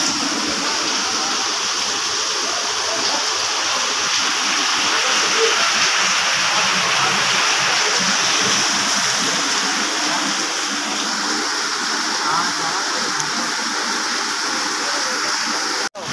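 Heavy rain pouring down, a steady, even rushing hiss.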